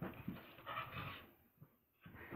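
Two dogs play-tussling nose to nose, with a dog's rough grumbling and huffing sounds that fade out about a second and a half in.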